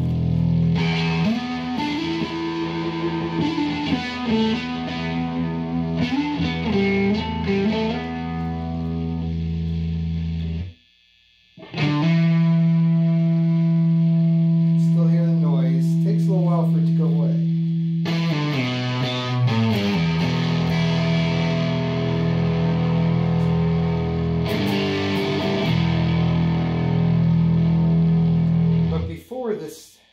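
Distorted electric guitar played through an amp: sustained low notes and chords with string bends and vibrato, with a short break about eleven seconds in and the playing stopping near the end. The tone is dark, with little treble, which the player takes for a fault in his pedal chain.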